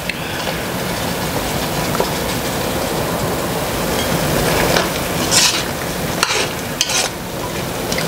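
Cubed butternut squash sizzling steadily in melted butter in a Dutch oven as it is stirred with a slotted spoon. The spoon scrapes against the pot a few times in the second half.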